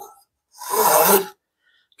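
A wooden-bodied shoulder plane taking a single stroke across wood, a rasping cut lasting under a second, about half a second in. It sounds rough rather than smooth; the user suspects the blade needs sharpening and is somewhat unsupported in the body.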